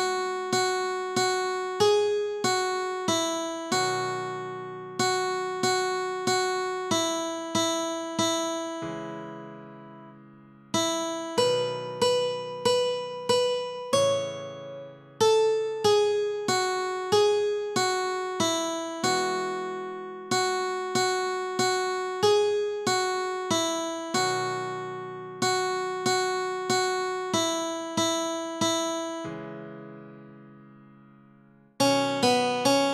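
Guitar playing a single-note melody slowly, one plucked note at a time, about two notes a second, each note ringing and fading. There are a couple of short gaps where a note is left to die away. The melody is played at half speed.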